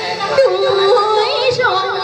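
A woman singing in Hồ Quảng Vietnamese opera style, a melismatic line with quick ornamental pitch turns that settles into a long held note near the end.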